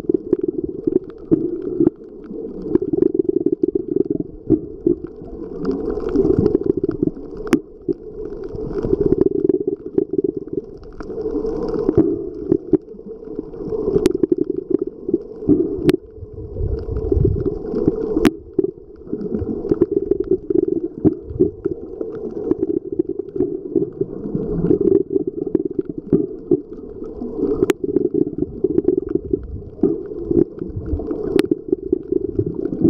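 Muffled underwater noise picked up by a submerged Nikon Coolpix AW130 waterproof camera: a low rumble of moving water that swells and fades every few seconds. A few sharp clicks stand out from it.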